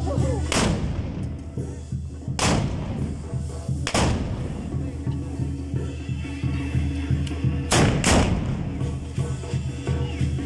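Black-powder muskets fired by carnival dancers: five loud shots, at about half a second, two and a half and four seconds in, then two close together near eight seconds. Band music with a steady beat plays underneath.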